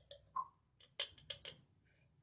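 A few faint light clicks and taps from a small glass spice jar of ground cumin being handled and shaken over a bowl of curd.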